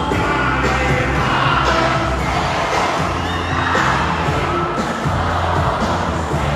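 Live hip-hop concert heard from among the audience: loud music with a heavy bass line and vocals through the PA, with the crowd cheering and singing along.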